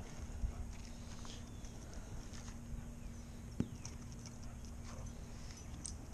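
Quiet yard ambience with faint, scattered footsteps and one sharp click about three and a half seconds in, over a steady low hum that fades out near the end.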